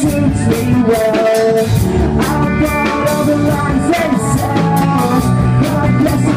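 Live rock band playing: electric guitars and a drum kit keeping a steady beat, with a male singer's vocals over them.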